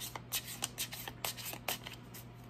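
Tarot cards being flicked through and gathered in the hands: a quick, irregular run of light papery snaps, about five or six a second.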